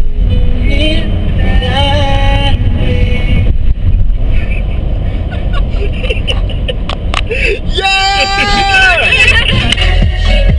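Steady low road-and-engine rumble inside a moving van's cabin, with several people's voices and laughter over it. Near the end a voice holds one long sung note.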